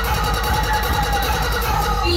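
Loud DJ music from a large outdoor speaker stack: heavy, fast-repeating bass pulses under a dense, noisy wash of sound.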